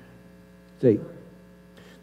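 Steady low electrical mains hum. One short spoken word comes about a second in.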